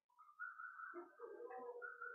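Faint bird calls in the background, a few wavering calls.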